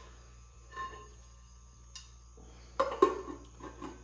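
A cut-glass cake plate clinking against an aluminium pudding mould as it is set over the top, with a faint click about a second in and sharper clinks near the end.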